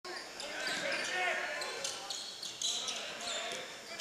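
Live basketball game sound on a hardwood court: a basketball bouncing as it is dribbled, short high-pitched squeaks from players' shoes, and indistinct voices echoing in the gym.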